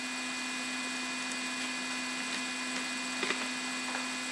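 Steady electrical hum, with a couple of faint ticks of trading cards being handled about three seconds in.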